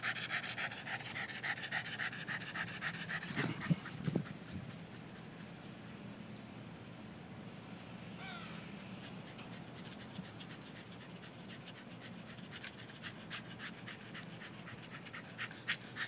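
West Highland White Terrier panting fast and hard, the laboured breathing of a dog worn out after about twenty minutes of non-stop running. Two short knocks come about three and a half to four seconds in. The panting then fades as the dog runs off and grows louder again near the end as it comes back.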